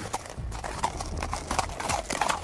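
Horse hooves clip-clopping in a quick, uneven run of hoof strikes, a radio-drama sound effect of a horse moving off.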